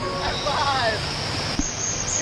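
Water rushing and splashing close around an action camera sliding down a water slide. A voice calls out once about half a second in, falling in pitch.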